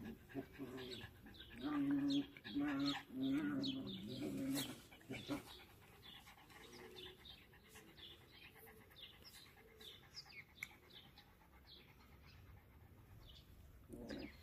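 Small dog vocalizing in a few short, even-pitched bursts during the first five seconds, then falling quiet while birds chirp faintly.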